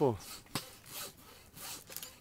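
A knife blade slicing cape buffalo hide away from the carcass during skinning, in short, irregular strokes, each a brief high hiss, with a sharp click about half a second in. The knife is a railroad spike knife.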